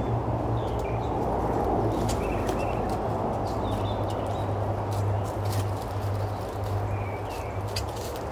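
Steady hum of honeybees around an opened hive box, with small birds chirping now and then in the background.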